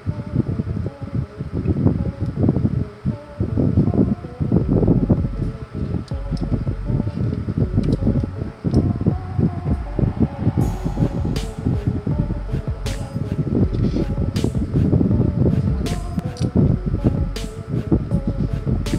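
Steady, dense whirring rumble like a room fan, with a faint constant tone. From about halfway through come a series of small sharp clicks as multimeter probes and alligator clips are handled.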